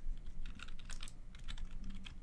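Computer keyboard being typed on: light, irregular key clicks, several a second, over a faint low hum.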